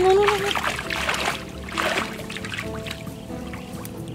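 Hands splashing and churning in shallow muddy water, in a few bursts within the first two seconds, the first the loudest, over steady background music.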